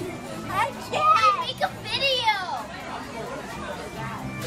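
Young children's excited voices, squealing and calling out, with high cries that bend up and down and one long squeal falling in pitch about two seconds in.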